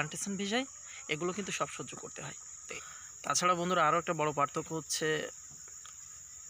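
A man talking, over a steady, high-pitched drone of insects that runs on without a break.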